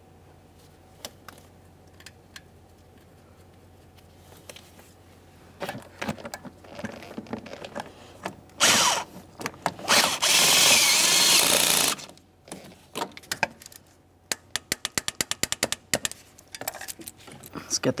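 A power tool spinning a socket to run down the bracket's mounting nut, in a short burst and then a run of about two seconds. A hand ratchet follows with quick, even clicks, about six a second, as the nut is snugged and torqued.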